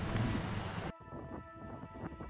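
Wind rushing on the microphone beside a geothermal pond, cut off suddenly about a second in. Soft background music follows.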